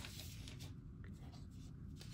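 Quiet room tone: a faint steady low hum with no distinct sound.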